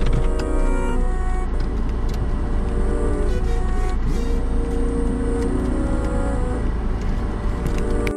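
Outdoor ambience: a steady low rumble, like traffic or wind on the microphone, with music playing underneath; it cuts off abruptly at the very end.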